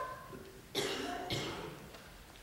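A person coughing: two harsh coughs in quick succession, starting a little under a second in.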